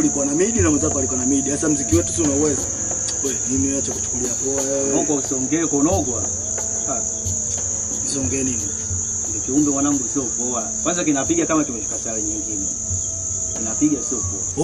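Night crickets chirring in a continuous, steady high-pitched drone.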